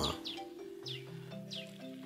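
Soft background music of sustained low notes that shift partway through, with a bird chirping over it in short falling calls repeated several times.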